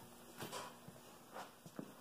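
Near-silent room tone with a few faint soft knocks about half a second in, in the middle and near the end.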